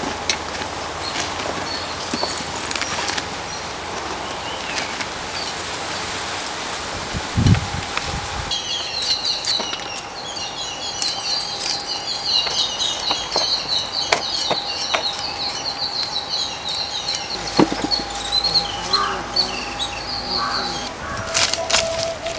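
Small birds twittering in rapid high-pitched runs from about a third of the way in, over a steady background hiss, with a single low thump just before the twittering starts.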